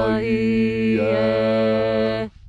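A voice intones a drawn-out chanted name in a ritual, held on one steady low pitch. The vowel sound changes twice along the way.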